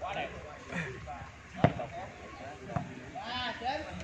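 A ball struck twice during a foot-volleyball rally: two sharp thuds about a second apart, the first the louder, with people's voices in the background.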